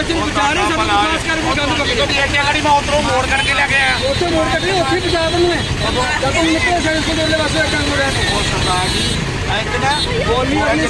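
Several people talking heatedly over one another in a street argument, over a steady low rumble of traffic.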